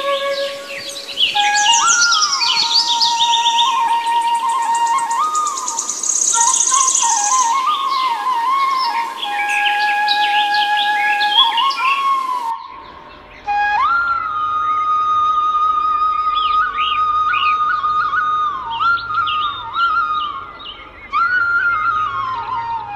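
Indian bamboo flute (bansuri) playing a slow melody of long held notes with slides between them, over birdsong chirping. About 13 s in it changes to another flute passage, with fewer birds and a low drone underneath.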